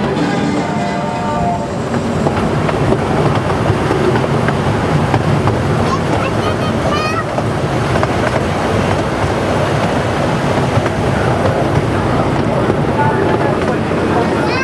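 Casey Jr. Circus Train ride cars rumbling and clattering steadily along their track. Music fades out in the first two seconds, and a brief high voice calls out about seven seconds in.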